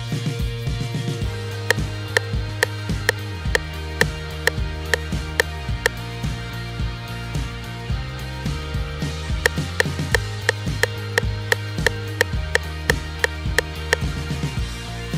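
Google Search's built-in digital metronome clicking at a steady 130 BPM, about two clicks a second, from a couple of seconds in until about six seconds. After a pause it starts again near nine seconds at 175 BPM, about three clicks a second. Background music plays underneath.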